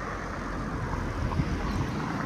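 Steady outdoor background noise, a low rumble with no distinct events.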